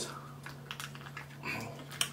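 Faint small clicks and crinkles as fingers pick at and peel back the lid of a small dipping-sauce cup, over a low steady hum.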